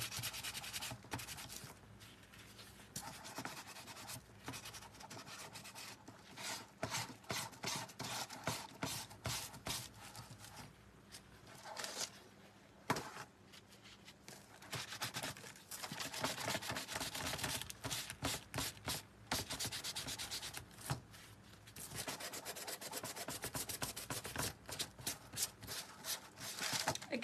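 Sanding block rubbed in quick back-and-forth strokes over a painted surface, in runs broken by short pauses: distressing the light top coat to bring the dark paint beneath back through.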